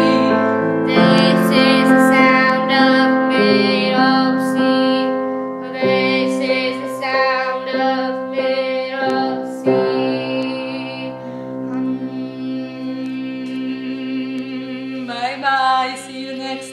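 Grand piano playing a vocal warm-up accompaniment, with a girl and a woman singing along in the first few seconds. The piano carries on alone through the middle, and wavering sung notes come back near the end.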